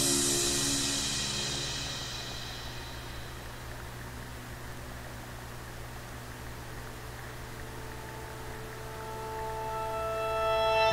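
A music track fades out, leaving a few quiet seconds with a low steady hum and faint hiss, and the next track fades in near the end.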